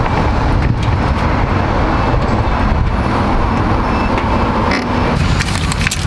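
Steady road and engine noise of a moving motor vehicle, with no speech over it.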